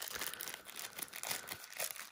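Plastic wrapping being pulled and torn open by hand, crinkling in an irregular crackle.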